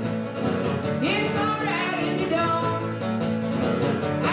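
Steel-string acoustic guitar strummed steadily, with a man singing a held, gliding vocal line over it from about a second in.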